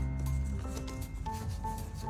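Background music with a light melody of held notes, over which a plastic toy ball rubs and clicks as an otter paws and mouths it on a wooden floor.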